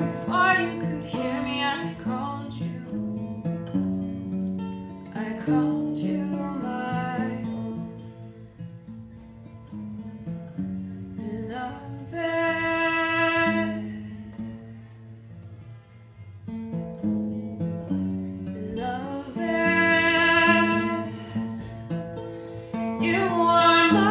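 Acoustic guitar picking a slow melody, joined by a woman's voice singing long held notes with vibrato about halfway through and again near the end.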